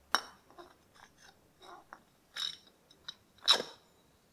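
Metal cover of a Mercedes W123 power steering pump reservoir being handled and seated back over the filter spring: a series of short clicks and scrapes, the loudest right at the start and about three and a half seconds in.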